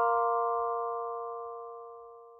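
Closing chord of a short logo jingle: several bell-like mallet-percussion tones, glockenspiel-like, held together and ringing out as they fade away.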